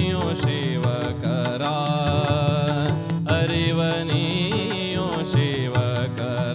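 Indian devotional bhajan music: harmonium melody over tabla and small hand cymbals (taal) keeping a steady beat.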